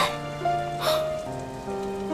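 Steady rain falling, under soft background music of long held notes that shift every half second or so. A short hiss comes just under a second in.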